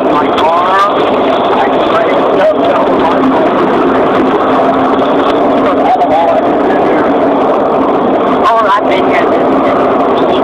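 Loud, continuous chatter of several overlapping voices inside a moving vehicle, over the steady hum and road noise of the vehicle.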